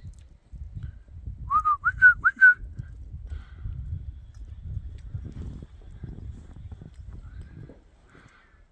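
A person whistling four quick, rising chirps to call a dog, about a second and a half in, over a low, uneven rumble.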